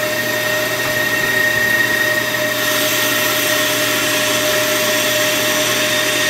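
Ammco bench brake lathe running steadily with a brake rotor spinning on its arbor: a constant motor hum with a steady high whine over it.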